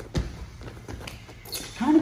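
Footsteps and thuds of wrestling shoes on a foam wrestling mat, with one heavier thump just after the start and lighter steps after it.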